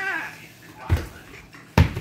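Two thumps about a second apart, the second louder, as a toddler comes off a pink yoga wheel onto a foam play mat and the wheel topples over.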